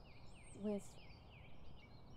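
Birds singing: a run of quick falling chirps repeats several times a second, with a higher whistled note about half a second in, over a low steady outdoor rumble.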